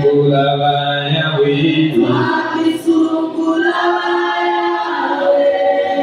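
A congregation singing together, men's and women's voices at once, holding long notes.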